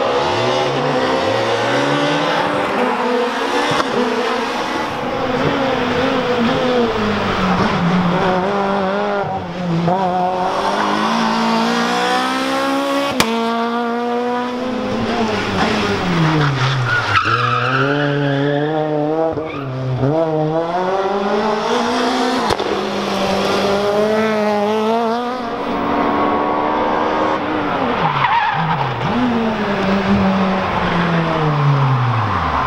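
Renault Clio RS rally cars' four-cylinder engines revving hard, the pitch climbing under acceleration and falling sharply on lifts and downshifts, several times over as cars pass one after another, with some tyre squeal in the corners.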